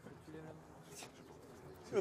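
A faint, low-pitched bird call against quiet background noise.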